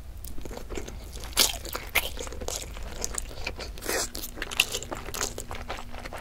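Close-miked ASMR mouth sounds of biting into and chewing a peeled hard-boiled egg: a steady run of short, sharp, moist clicks, a few of them louder.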